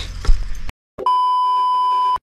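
A brief thump, then a moment of dead silence and a steady test-tone beep, the kind laid under TV colour bars.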